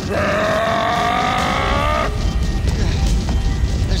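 Cartoon fight sound effects: a held, slowly rising shriek lasts about two seconds and cuts off suddenly. A low, steady rumble follows.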